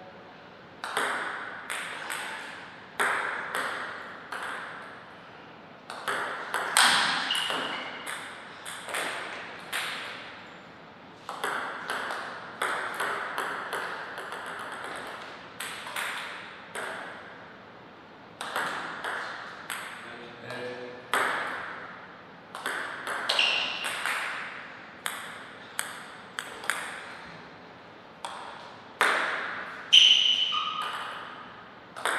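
Table tennis rallies: the ball clicking sharply off the rackets and the table in quick strings of hits about half a second apart, with short pauses between points.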